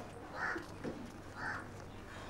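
Crows cawing: two short calls about a second apart.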